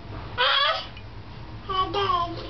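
A high-pitched human voice making two short vocal sounds: a brief exclamation about half a second in, then speech-like sounds starting near the end.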